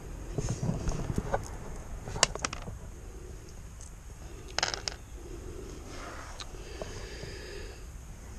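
Quiet handling noises with a few sharp clicks about two seconds in and a short rattle of clicks about halfway through, as small mounting brackets and screws are handled.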